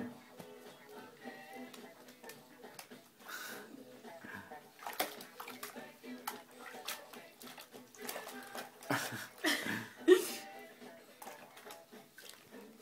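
Water splashing and sloshing in a baby's Tummy Tub bath as the baby moves about, in short irregular strokes over faint background music. A couple of brief, louder vocal sounds come about nine and ten seconds in.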